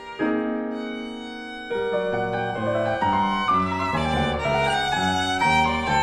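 Violin and piano duo playing contemporary classical music: a held sound that fades for about a second and a half, then from about two seconds in a busier passage of changing notes, with deep low notes under higher lines.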